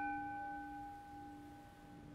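A single struck altar bell marking the elevation of the chalice at the consecration, its ringing slowly fading: a low tone and several higher ones die away over the two seconds.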